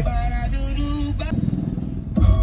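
Steady engine and road noise inside a moving car's cabin, with a held sung note dying away in the first second or so.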